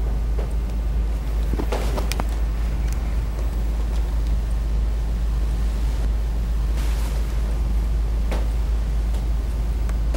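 Steady low background hum, even in level throughout, with a few faint brief rustles and clicks as a stethoscope chestpiece is shifted across a cotton gown.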